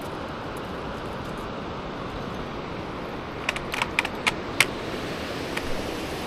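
Stones clicking underfoot on a loose rocky track, a few sharp clicks about three and a half to five seconds in, over a steady rushing background noise.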